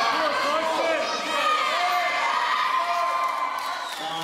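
Audience shouting and cheering, many voices overlapping.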